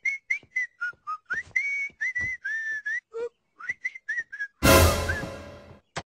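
A short jaunty tune whistled in quick separate notes, then a door shutting with a sudden loud bang that dies away over about a second, from a cartoon clip's soundtrack.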